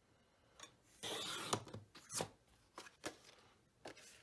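A Fiskars paper trimmer slicing through cardstock, a short scraping slide about a second in. Several light clicks and paper rustles follow as the cut cardstock is handled.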